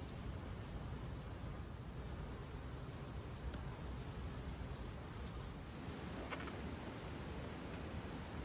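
Faint, steady workshop background noise with a few small clicks, once about three and a half seconds in and again after six seconds, from a screwdriver and small metal parts being handled as a Honda Gyro carburetor is screwed back together.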